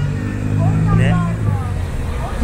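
Road traffic close by: a vehicle engine running with a low steady hum, which drops away about one and a half seconds in.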